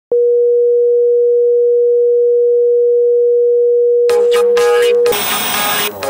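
A steady electronic test tone at a single middle pitch, starting with a click and held for about five seconds. About four seconds in, a jumble of music and noise breaks in; the tone then cuts off into about a second of loud static hiss.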